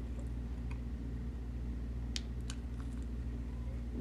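Quiet chewing of a soft marshmallow: a few faint small mouth clicks over a steady low hum.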